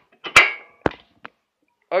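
Metal clinking during reassembly of a Vespa engine's cylinder head: two sharp metallic knocks about half a second apart, the first ringing briefly, then a faint tick.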